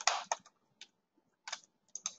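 Sharp computer input clicks as points of a spline line are placed: a quick cluster at first, then single clicks just under a second in, about a second and a half in, and near the end.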